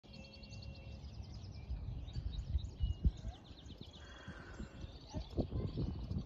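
Several wild birds singing and calling in quick, high chirps and trills, over a low, uneven rumble of wind on the microphone that gusts loudest about three seconds in.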